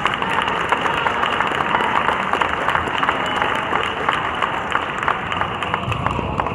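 Crowd clapping and applauding in a gym: a dense patter of many hand claps that thins out near the end.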